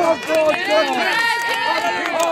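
Speech only: a man's raised voice preaching in the open air, reciting a Bible verse, with one word drawn out long in the second half.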